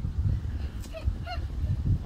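Short honking calls repeated a few times, starting about halfway in, over a steady low rumble.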